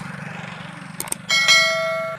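Subscribe-button animation sound effects: two quick mouse clicks about a second in, then a bright bell ding that rings for most of a second. Under them, a steady low pulsing engine sound, like a motorcycle running.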